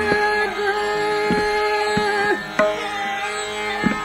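Hindustani classical vocal music in Raag Bihag: a woman's voice holds a long, slightly wavering note over a steady tanpura drone. The note ends a little past halfway. Scattered tabla strokes sound through it.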